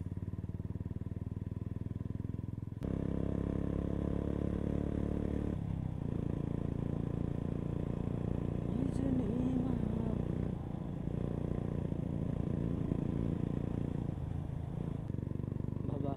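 Royal Enfield Bullet's single-cylinder engine running steadily while the motorcycle is ridden along the road. It gets louder about three seconds in, and eases off briefly a few times later on.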